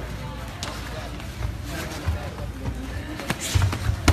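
Low murmur of spectator chatter in a gym hall, with a few dull thuds and sharp taps from sparring point fighters' feet and padded gloves on the mat.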